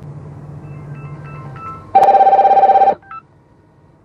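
An electronic telephone ring: a loud, fast-pulsing trill about two seconds in that lasts about a second, with a single short blip just after. Before it, a few faint short beeps sound over a low steady hum.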